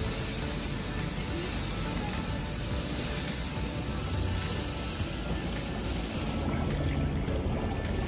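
Steady rush of water spilling over the edge of a fountain basin.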